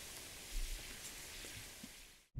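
Faint, steady outdoor hiss with a short low thump about half a second in, fading out near the end.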